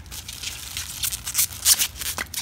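Plastic bubble-wrap packet rustling and crinkling in gloved hands as a small vial of oils is drawn out of it, with a few sharper crackles in the second half.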